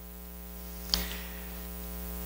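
Steady electrical mains hum, with one faint short click about a second in.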